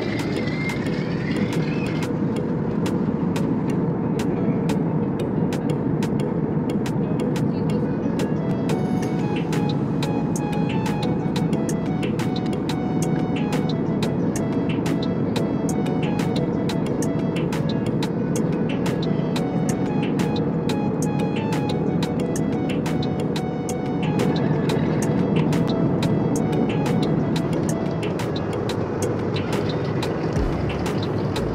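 Steady drone of a jet airliner's cabin in flight, with background music with a steady beat laid over it from about two seconds in.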